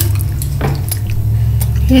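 A few faint clicks over a steady low hum: the small noises of chewy candy being handled and chewed.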